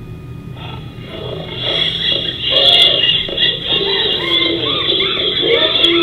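A recorded children's animal song from an English course book starting to play: quiet for about a second, then music with gliding voices fades up and grows louder.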